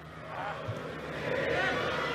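Football stadium crowd noise under a TV broadcast: a steady din with faint voices in it, growing louder after the first half-second.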